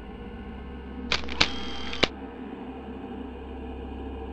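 Camera shutter click sound: sharp clicks about a second in, a brief hiss, and a closing click near the middle, over a steady low hum.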